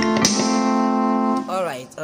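Electronic keyboard chord struck and held for about a second and a half before it dies away. A man's voice comes in near the end.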